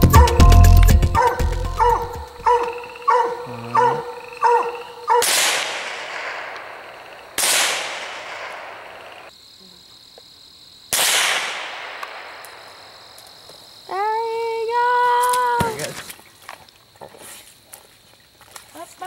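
Three rifle shots a few seconds apart, fired up into a tree at a treed raccoon, each a sharp crack followed by a long fading echo. Later a coonhound gives one long bawl. Music plays through the first few seconds.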